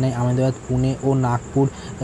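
A man speaking Bengali in a steady narrating voice, with a faint, steady high-pitched whine underneath.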